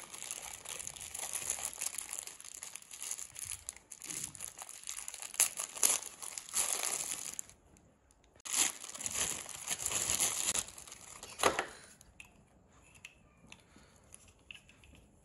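Clear plastic packaging bag crinkling as hands handle it and pull it open. It comes in two spells with a short lull about eight seconds in and a sharp crackle near 11.5 s, then dies down to quieter handling near the end.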